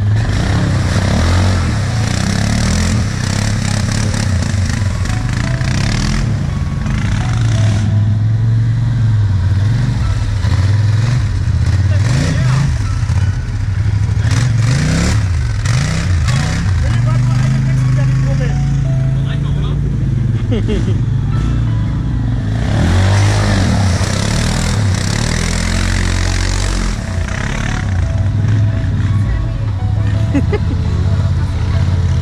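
Quad bike (ATV) engines revving up and down as the quads drive through a mud hole, with tyres churning through mud and water. In the second half the quad is a Polaris Sportsman XP 1000 Highlifter.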